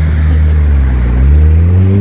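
A road vehicle's engine running close by, its pitch rising steadily as it accelerates past, over a strong low rumble.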